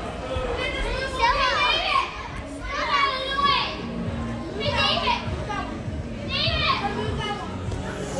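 Children yelling and shrieking at play in a large hall, with four high, sliding calls about a second and a half apart over a steady background din of voices.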